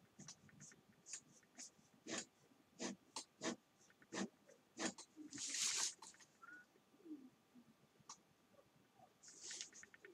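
Pen drawing quick strokes on paper: a string of faint, short scratches, with one longer scrape about five and a half seconds in.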